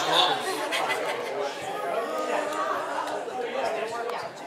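Many people talking at once in a large room: overlapping chatter with no single voice standing out.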